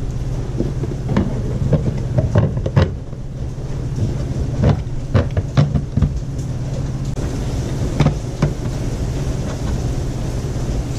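Scattered knocks and clicks from hands handling wiring and mounting hardware, about seven short strokes over a steady low hum.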